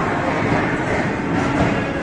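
Jhelum Express passenger coaches running along the track, a steady rumble of wheels on rails heard from an open coach doorway.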